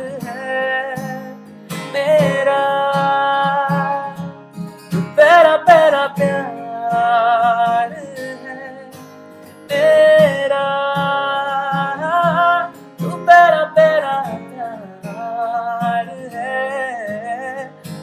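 A man singing a Hindi love song in long, held notes with vibrato, accompanying himself on a steadily strummed acoustic guitar.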